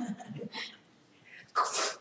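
A person's single short, sharp burst of breath near the end, after a quiet stretch.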